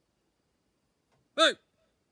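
A man calls out a single short "hey", its pitch rising and falling, about a second and a half in; otherwise near silence.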